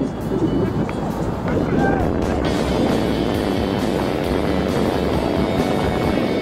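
Outdoor field sound from a soccer game, a low rumble with distant voices, mixed with background music that grows clearer in the second half.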